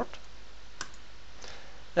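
A single computer mouse click about a second in, over a faint steady background hiss.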